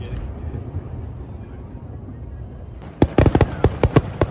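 Aerial fireworks going off: a low rumble, then about three seconds in a rapid string of sharp crackling pops, about ten in just over a second, the loudest sounds here.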